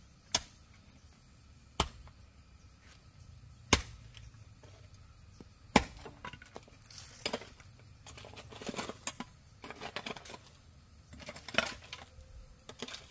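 Hammer blows on a wooden board, four single strikes about two seconds apart, the last two loudest. Lighter scraping and knocking of boards being handled and marked follow in the second half, over a steady high drone of insects.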